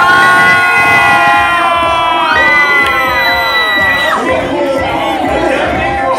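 Crowd screaming and cheering, with several long, high-pitched screams held and overlapping; the screams thin out after about four seconds into more scattered shouting.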